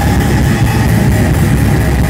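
Live metal band playing loud, recorded on a phone in the crowd. Guitars, bass and drums merge into a dense, steady low rumble.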